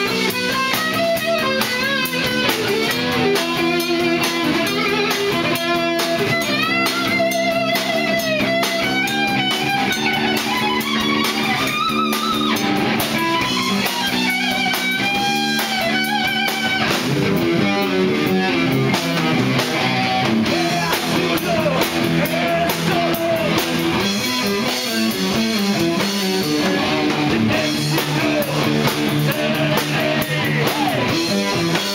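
Heavy metal band playing live: electric guitar playing riffs and melodic lead lines with pitch bends over a drum kit, loud and steady.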